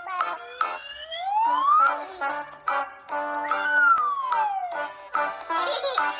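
Background music with a whistle-like tone that slides down and then up in turn, each glide about a second long, over held notes and short clicking percussion.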